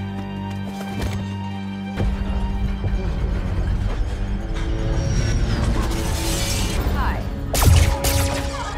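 Dramatic film-soundtrack music with held tones. About two seconds in, a low rumble enters and swells, and a loud crash near the end is the loudest moment.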